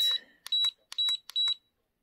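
Cordless automatic hair curler's control panel beeping four times, a short high beep with a click at each button press, as the timer is stepped down from 12 to 8.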